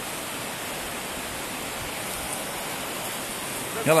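A stream rushing steadily: an even hiss of running water.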